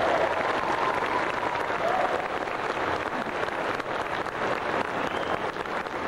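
Audience applauding at the end of a concert band piece, with a few calls rising above the clapping near the start.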